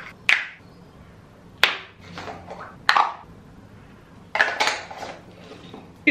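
Small skincare jars and their lids clacking as they are handled and set down on a sink: four or five sharp clicks about a second apart, with a quick double knock near the end.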